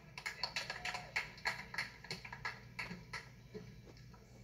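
A quick, irregular run of sharp taps or clicks, about six a second, thinning out after about three and a half seconds.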